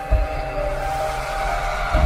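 Intro music: held synthesizer tones over a deep bass rumble, with a heavy low hit just after the start.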